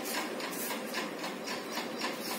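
A faint, rapid, steady rhythmic clatter, about five or six strokes a second, over a low hiss: a small machine running in the background.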